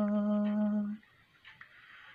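A man singing a Pahari folk song unaccompanied, holding one long steady note that ends about a second in, followed by a brief near-silent pause.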